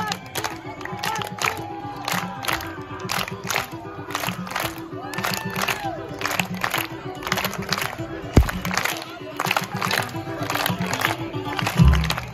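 Samba music with a steady, driving percussion beat, with crowd voices and cheering over it. A single low thump sounds about eight seconds in.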